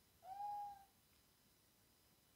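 A single short, faint pitched call of about half a second near the start, rising slightly at first and then held on one note.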